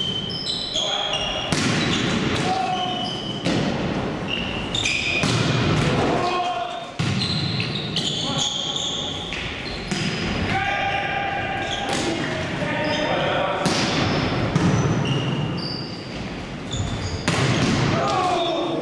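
Indoor volleyball rallies in a reverberant sports hall: the ball being struck, with repeated sharp hits, sneakers squeaking on the court floor and players calling out.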